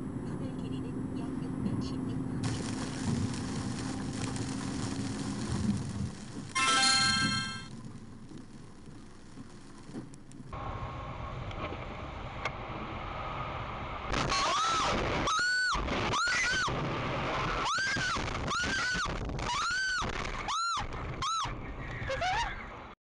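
Road and engine noise of a car driving through a tunnel, with a car horn sounding loudly for about a second about seven seconds in. After a sudden change about halfway, a run of about eight short pitched sounds, each rising and then falling.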